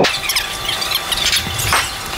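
Rubber-soled bowling shoes squeaking on a smooth tile floor: a run of short, high-pitched squeaks as the feet shift and step.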